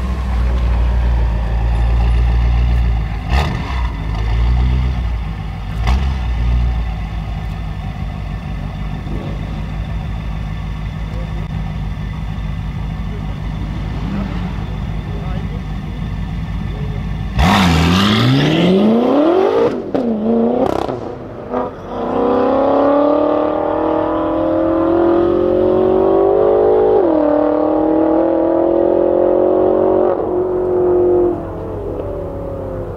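BMW M5 F10's twin-turbo V8 with an Akrapovic exhaust idling at low rumble. About halfway through it launches at full throttle, the loudest part: the revs climb steeply, there are two quick upshifts, and then it pulls hard through the gears with a steadily rising note and another shift near the end.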